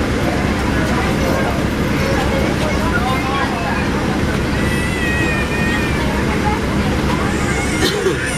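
Cabin of a NABI 40-SFW transit bus standing at a stop: a steady engine and ventilation hum, with indistinct passenger voices over it.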